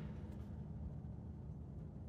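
Quiet background with a faint, steady low hum and no distinct sound event.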